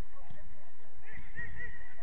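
Short, high-pitched shouted calls from footballers across the pitch, several in quick succession, over low irregular thuds of play.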